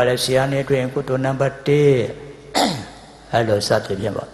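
A man speaking: a monk delivering a Burmese-language sermon into a microphone, in phrases with short pauses between them.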